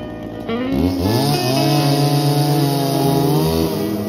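An engine revs up about half a second in, holds a steady high pitch for about three seconds, then drops back near the end, with music underneath.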